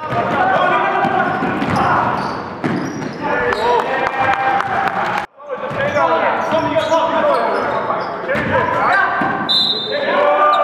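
Live game sound in a gym: a basketball bouncing on the court floor and players' voices, echoing in the large hall. The sound drops out sharply for a moment about halfway through.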